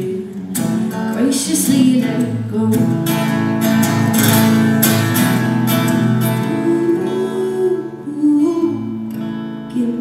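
Live solo song: an acoustic guitar strummed steadily, with a woman singing over it in long held notes.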